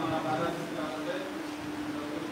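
A man's voice speaking over a microphone, reading aloud, with a steady low hum underneath.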